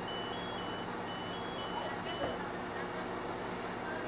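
Fire apparatus engine running steadily at the scene, with faint electronic beeping that alternates between two high pitches during the first two seconds.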